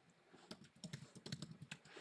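Faint typing on a computer keyboard: a quick, irregular run of keystrokes starting about half a second in.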